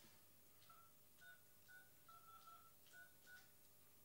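Mobile phone keypad tones as a number is dialled: a quiet run of about seven short beeps, with one longer beep in the middle.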